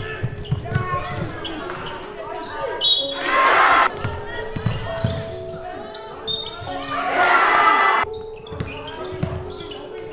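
Live game sound in a sports hall: a basketball dribbled on the court, with players' voices throughout and two louder bursts of voices about three and seven seconds in.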